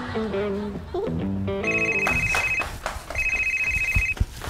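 Landline desk telephone ringing with an electronic ring, two rings about a second long with a short gap between, starting a little before halfway through.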